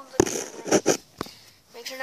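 Sharp knocks and rustling close to a handheld camera's microphone as it is moved about against fabric, with a brief voiced sound at the start.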